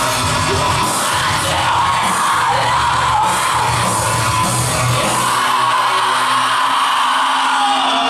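Live industrial rock band playing loud through a club PA, with yelled vocals over the instruments. A little over halfway through the heavy low end drops out, leaving a single held note and higher noise.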